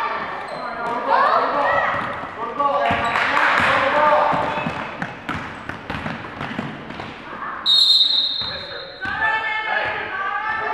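Basketball game in a large gym: the ball bouncing on the hardwood court amid players' and spectators' voices. A referee's whistle blows once, steady and shrill, for about a second near the end.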